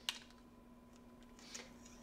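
A sharp little click just after the start, then faint handling noises near the end, as a 3D-printed cover is pulled off a wired LED taillight insert. A faint steady hum sits underneath.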